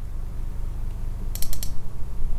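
A steady low electrical hum. About one and a half seconds in, a quick run of about four sharp clicks from computer input.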